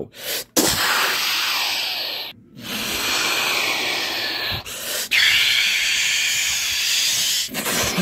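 Rocket-launch whoosh for a toy spaceship's lift-off: a long, rough hissing noise that breaks off briefly about two seconds in, then carries on.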